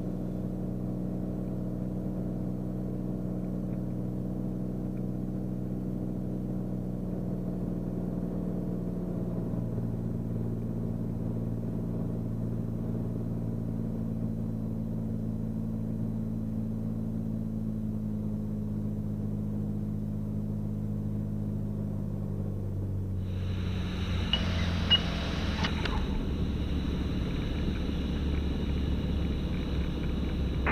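Inside the cockpit of a Beechcraft Bonanza, its piston engine and propeller running at low power in a steady drone that sags slightly in pitch as the power comes off in the flare. About 23 seconds in, a broader rushing noise joins as the wheels touch down and roll out, with a brief sharp sound a second or two later.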